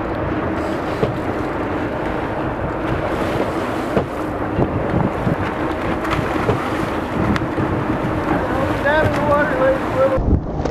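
Steady rush of churning seawater along a boat's hull and wind buffeting the microphone, over a steady hum from the boat's engine.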